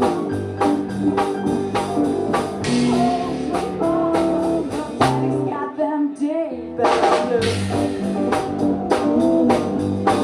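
A live rock band playing a blues-tinged song, with drums, bass and electric guitar. About five and a half seconds in, the drums and bass drop out for roughly a second, leaving a few bending pitched notes, and then the full band comes back in.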